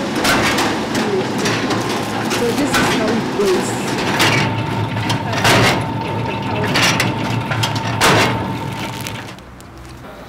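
Substrate mixing and spawn-bag filling machinery running with a steady hum and a sharp knock about every second and a half. A steady whine joins in about halfway through, and the machine noise stops shortly before the end.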